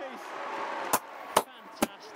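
Three sharp hand claps about half a second apart, over faint background noise.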